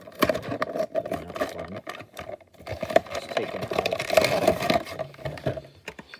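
An action figure's cardboard box and plastic tray and bag being pried open and handled close to the microphone: irregular crinkling, clicks and scrapes that come thickest in the middle.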